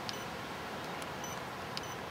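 A pause between spoken phrases: steady background hiss, with a few very short, faint high-pitched peeps.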